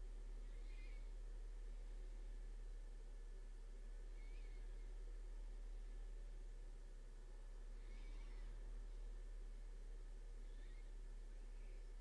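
Quiet room tone: a steady low electrical hum and a thin, faint high whine, with four faint short chirps spaced a few seconds apart.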